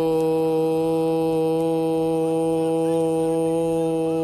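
A man's voice holding one long, steady vowel at a single pitch: a race commentator drawing out the word "shawt" (race heat) as he calls the start of a camel race.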